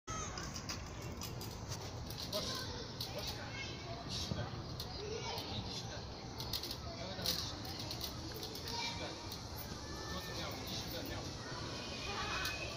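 Outdoor ambience with indistinct voices of adults and children in a courtyard, steady throughout with no single loud event.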